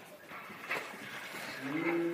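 A boy's voice holding one low, steady note, starting near the end, after a little faint rustling.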